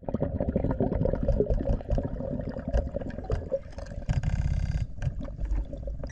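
Underwater sound of a scuba diver breathing through a regulator, with crackling, gurgling exhaled bubbles and a longer buzzing breath about four seconds in.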